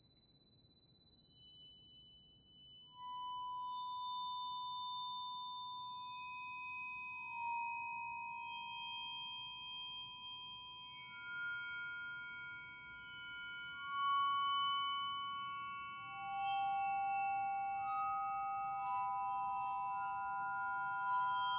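Percussion quartet music: long, pure, ringing tones from tuned metal percussion, entering one at a time, high at first and then lower, and overlapping into a sustained chord that swells louder several times.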